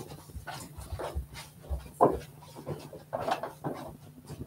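A dog whining and panting, restless to be let outside, mixed with short irregular knocks and thumps of someone getting up and moving about; the sharpest knock comes about halfway through.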